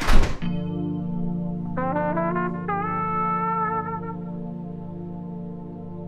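A door slams shut with one loud bang. Then background score music follows: a held low chord, with a stepping melody coming in on top about two seconds in.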